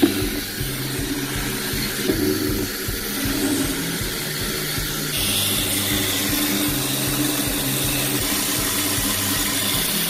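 High-pressure water jet from a rotating sewer-cleaning nozzle spraying inside a clear plastic pipe: a steady hissing rush of water, turning brighter about five seconds in.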